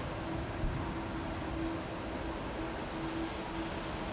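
Steady air-cooling noise of a Cray supercomputer's cabinet blowers, an even whoosh with a constant hum running under it. There is a faint click about half a second in.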